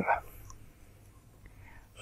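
The end of a man's spoken word, then near silence: faint room tone.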